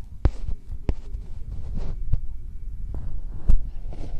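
Wind buffeting an outdoor microphone: a loud low rumble broken by irregular sudden thumps, the strongest about three and a half seconds in.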